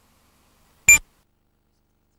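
A single short electronic beep about a second in, with dead silence around it.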